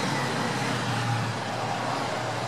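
Steady street traffic noise, with the low hum of a car engine under an even hiss.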